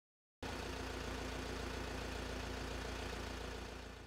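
Police van's engine idling steadily with a low hum, cutting in abruptly about half a second in and easing off slightly near the end.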